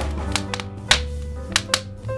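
Smooth jazz playing, with a bass line and held chords, over a crackling wood fire: a few sharp irregular pops, the loudest about a second in.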